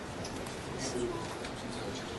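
Faint, low voice murmuring briefly over the steady hum of a lecture room.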